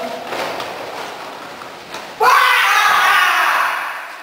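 A loud shout breaks out abruptly about two seconds in and holds for about a second and a half, after a softer noisy stretch.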